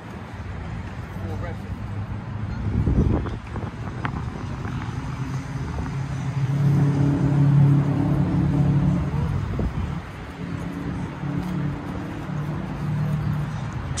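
Low, steady hum of passing road traffic, swelling to its loudest about seven to eight seconds in.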